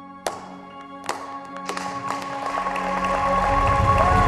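A few single hand claps ring out over soft, sustained background music, then more hands join in and the sound builds into applause that grows steadily louder.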